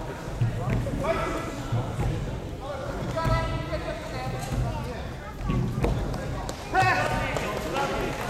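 Indistinct voices calling out in three stretches, over a background of repeated low thumps.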